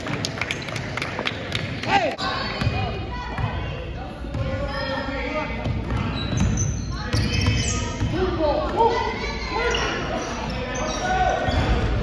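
Basketball bouncing on a hardwood gym floor during play, a scatter of sharp impacts, with players' and spectators' voices echoing in a large gym.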